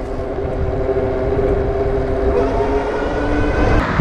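Wind rumble on a helmet-mounted microphone with a steady whine from a Super73 electric bike's motor while riding. The whine drops a little in pitch past halfway as the bike slows to a stop.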